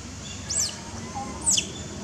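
Two short, shrill calls about a second apart, each swooping steeply down in pitch, over fainter whistled calls.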